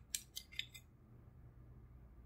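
A few light, sharp metallic clicks and taps within the first second as an Echo Dot's die-cast metal heat sink and its circuit board are handled and pulled apart.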